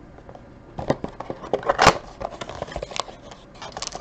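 Cardboard Donruss Optic trading-card box being opened by hand: a run of crackles, scrapes and taps as the lid flap is pulled open, the loudest about two seconds in.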